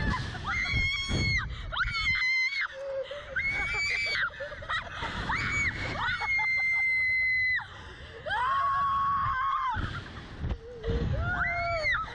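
Two girls screaming over and over in long, high-pitched screams, one held for about a second and a half just past the middle, with a low rush of wind buffeting the microphone as the slingshot ride flings them.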